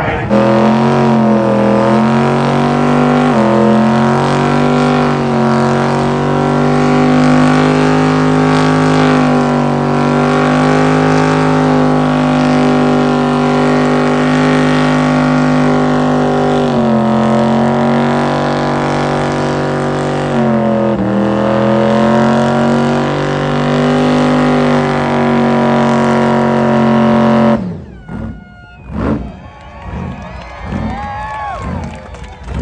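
Pickup truck engine held at high revs during a burnout while the tyres spin, its pitch staying steady with a few brief dips as the throttle is eased and reapplied. It cuts off suddenly near the end.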